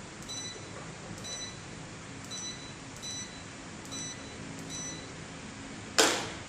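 An LED ceiling fan light's receiver beeping once for each remote-control button press, six short high beeps in all, over the steady whoosh of the fan running. A sharp knock comes right at the end.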